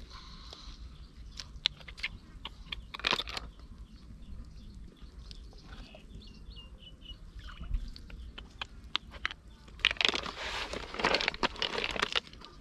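Large land snail shells being handled and dropped into a plastic basin: scattered clicks and clacks of shell against shell and plastic, with a longer rattle of shells about ten seconds in. Faint bird chirps around six seconds in.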